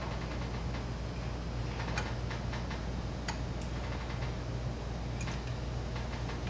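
A few light, scattered clicks of small metal carburetor parts being picked through by hand, over a steady low hum.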